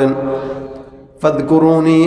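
A man chanting a short repeated phrase in a long, held, melodic voice through a microphone and loudspeakers. One phrase trails off in the first second, and a new one starts just over a second in.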